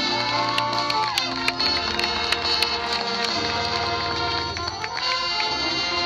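High school marching band playing its field show: held brass and wind chords over percussion, with many sharp taps and hits throughout.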